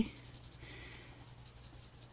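A coloured pencil shading on the paper of a coloring-book page: a faint, soft scratching.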